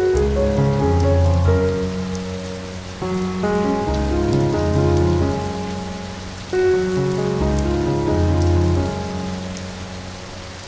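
Slow, soft relaxing music with held notes and deep bass, in phrases that swell and fade about every three seconds, mixed with a steady bed of falling rain and scattered drop ticks.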